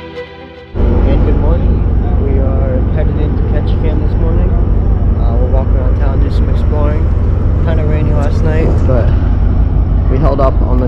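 Violin background music cuts off under a second in, giving way to loud wind rumble buffeting the microphone on an open ferry deck.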